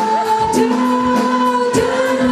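Live rock band playing, with a woman singing held notes over electric guitar and drums keeping a steady beat.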